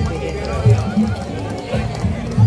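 Music playing over a loudspeaker with crowd voices talking.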